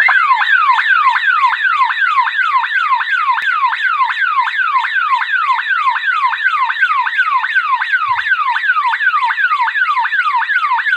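Electronic alarm siren of an elephant early-warning unit sounding, a rapid falling whoop repeated about two to three times a second. It starts suddenly as a person crosses the unit's active infrared beam, which sets off the alarm.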